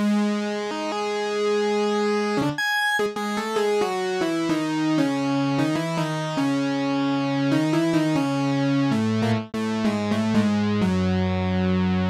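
Arturia CS-80 V software synthesizer playing a bright lead patch: a slow line of held notes, each with a full stack of overtones, stepping between pitches, with a short break about two and a half seconds in and the line dropping lower near the end.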